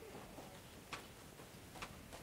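Quiet room tone with two faint, sharp taps, one about a second in and one near the end.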